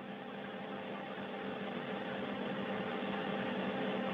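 Steady hum and hiss of the space station cabin's fans and equipment, heard over the narrow-band downlink audio, with a few steady hum tones and a slow rise in level.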